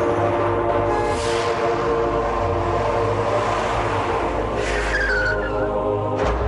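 Television channel intro music with a sustained low drone and held chords, overlaid by two rushing swoosh effects, about a second in and again near the end.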